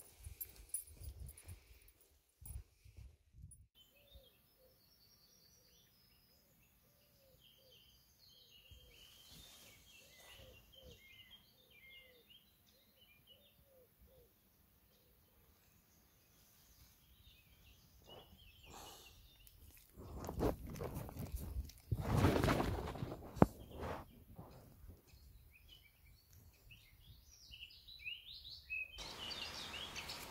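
Footsteps crunching on a gravel track for the first few seconds, then small birds chirping and singing, with a loud rustling lasting a few seconds about two-thirds of the way in.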